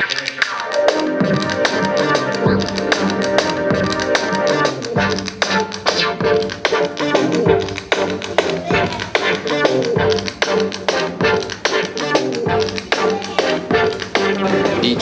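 Improvised electronic beat-jazz: synthesizer lead lines played from a wind-style controller with saxophone fingerings, over a looped drum beat.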